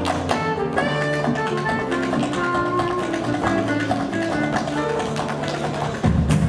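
Tap shoes striking the stage floor in quick rhythmic steps during a tap-dance solo, over loud backing music.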